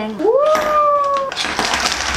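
A single drawn-out meow-like call that rises and then holds for about a second, followed by about a second of rattling noise as a set of plastic lip tint tubes is tipped out and scatters.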